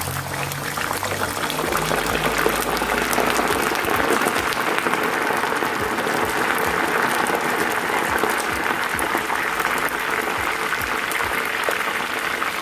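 Frozen french fries deep-frying in a small pot of hot oil: a loud, steady sizzle full of fine crackling pops, building up over the first few seconds as the oil boils up around the fries.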